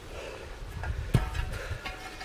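Blast-torn metal test pieces being handled, with faint ticks and one sharp metallic clink about a second in, over low wind rumble on the microphone.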